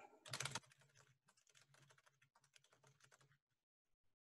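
Computer keyboard typed on in a fast, rapid run of keystrokes, faint. The run is loudest about half a second in and stops at about three and a half seconds, leaving a few stray clicks.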